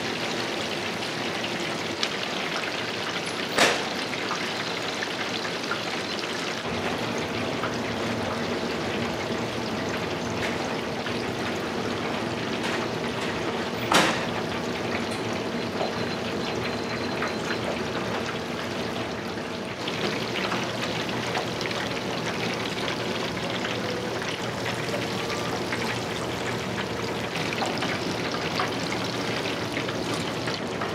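Breaded cutlets deep-frying in a commercial fryer: a steady sizzle of hot oil. Two sharp clicks come through, a few seconds in and again about halfway through.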